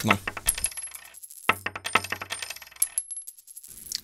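Coin drop sound effect, heard twice about a second and a half apart: each time a coin strikes a hard surface and rattles to rest in a run of rapid clinks with a thin metallic ring.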